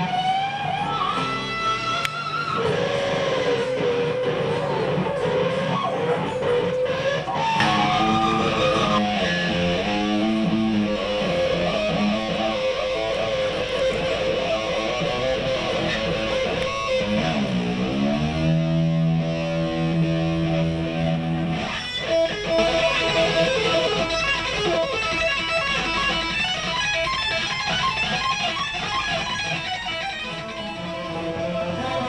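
Electric guitar playing an instrumental lead solo: sustained notes bent up and down, with a deep swoop down in pitch and back a little past halfway.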